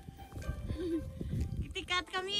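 A toddler's small vocal sounds: a short low murmur about a second in and a high squeal starting near the end, over irregular low bumps.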